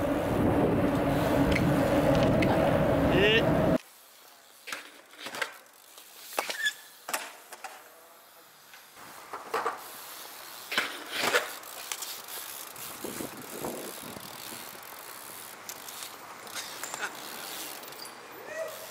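A loud, steady rushing noise as BMX bikes cruise, cutting off suddenly about four seconds in. Then a BMX bike ridden on stone paving: a string of sharp knocks and clacks from the wheels and frame hitting the ground through tricks and landings.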